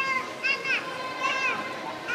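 Children's voices shouting and cheering swimmers on during a race in an indoor pool hall, with repeated high-pitched calls.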